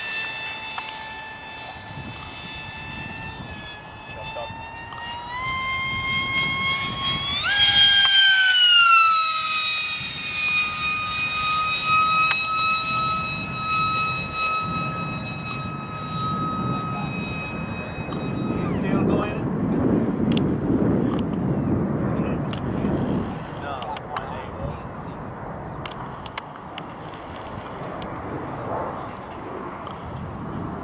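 ParkZone F-27Q Stryker's electric motor and pusher propeller whining as it flies, the pitch stepping up to its loudest about eight seconds in, easing back and holding steady, then cutting off at about nineteen seconds. A low, noisy rumble follows.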